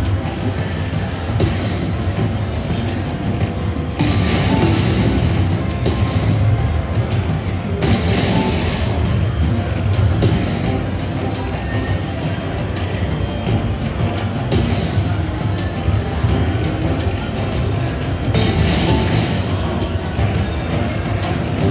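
Bao Zhu Zhao Fu slot machine playing its bonus-round music and effects during the hold-and-spin feature, with brighter surges of sound every few seconds as each spin lands new coin symbols.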